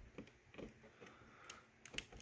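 A few faint, scattered ticks and small clicks of a CPU fan cable's plastic connector and wires being handled against the motherboard, with a sharper click near the end.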